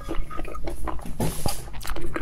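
Close-miked, wet mouth sounds of eating: chewing and lip smacks as a boiled egg from spicy soup is eaten, with many short clicks.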